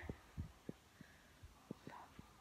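Near silence, with a few faint, soft, low thumps at uneven intervals.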